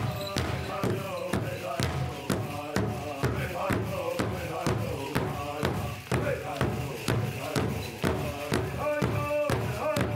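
Pow wow drum and singing: a drum struck in a steady beat, about three strokes a second, with voices singing a high, wavering chant over it.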